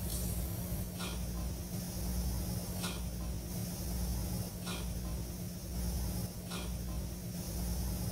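Steady low hum under a constant hiss, with a faint soft puff of noise recurring about every two seconds.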